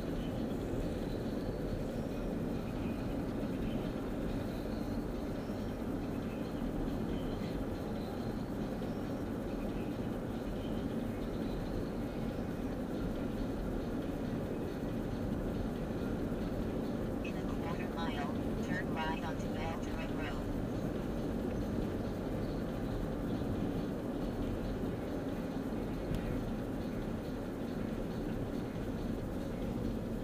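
Steady road and engine drone inside a moving Honda car's cabin, even throughout as it cruises along a city street. A brief faint voice is heard about two-thirds of the way through.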